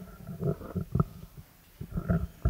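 Microphone handling noise: dull, muffled bumps and rubbing as a live microphone is picked up and passed from one person to another, with one sharper knock about a second in.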